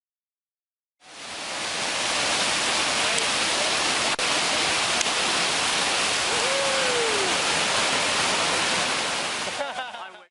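Whitewater rapids rushing in a loud, steady roar of water, starting about a second in and cutting off just before the end.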